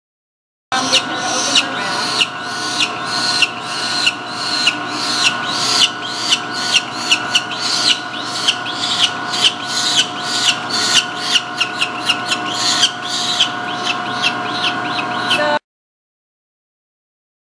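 Peregrine falcon nestling calling over and over as it is handled for banding: short rising-and-falling cries, about two a second. A steady hum runs underneath. The sound starts and cuts off suddenly.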